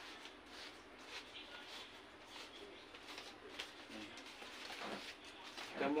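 Fresh coconut palm leaflets rustling and crackling faintly as they are woven by hand into a hat, with a bird cooing faintly in the background.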